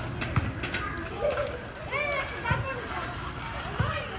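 Children's voices chattering and calling out while they play, with a few short knocks.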